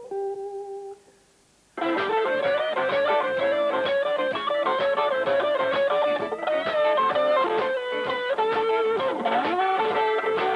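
Electric guitar in a blues style. A single held note rings and fades, and after a short pause the full band starts in. The lead guitar plays bent notes with vibrato over the band, including a deep bend down and back up near the end.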